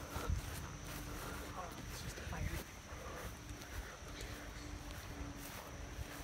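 Footsteps on grass with the handling rustle of a handheld camera as its holder walks, irregular soft thumps, with faint voices in the background.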